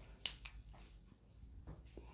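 A quiet room with one sharp, short click about a quarter of a second in, followed by a few fainter ticks.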